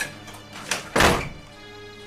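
A door shutting hard about a second in: one loud thunk, over steady background music.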